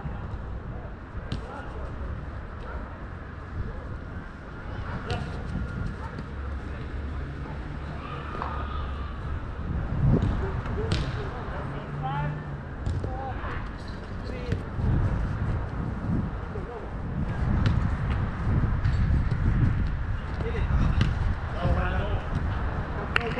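Small-sided soccer on an artificial-turf pitch: the ball is kicked now and then as sharp knocks, with players' shouts at a distance over a steady low rumble.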